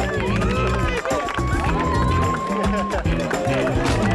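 Background music with a heavy bass line, over a crowd of excited voices and shouts, with one long high held cry for about two seconds in the middle.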